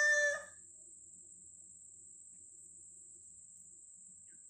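A woman's sung final note of a Telugu padyam, held on one steady pitch, ends about half a second in. After it there is only a faint, steady high-pitched whine.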